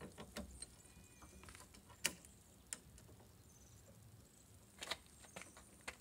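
Scattered light clicks and knocks of a boot-lid luggage rack's metal clamps being handled and fitted to a car's boot lid, the sharpest knock about two seconds in and another near five seconds.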